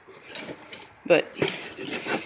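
A man's voice speaking one brief word about a second in, with faint clicks and clinks of metal engine parts being handled.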